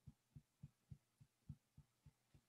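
Fingertips tapping on the collarbone point during EFT tapping: faint, soft, dull thumps at an even pace of about three and a half a second.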